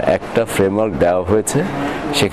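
Speech only: a man talking in Bengali.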